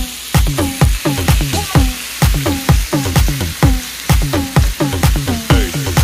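Tilapia fillets sizzling on a stovetop griddle, with a spatula scraping the pan, under electronic dance music with a steady, fast beat that is the loudest sound.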